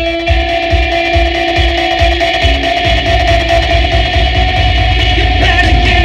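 Live rock music: an electric guitar holding long sustained notes over a steady low beat.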